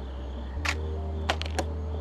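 Sharp clicks of a DSLR camera on a tripod firing during an exposure sequence: one click a little past half a second in, then three in quick succession about a second and a half in, over a steady low hum.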